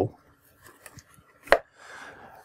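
Faint handling of a small cardboard box holding a charger and cable on a tabletop, with one sharp tap about one and a half seconds in and a light rustle after it.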